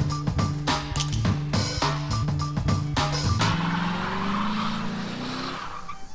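Music with a steady beat, then from about halfway a car engine revving with its pitch climbing and tyres squealing in a burnout.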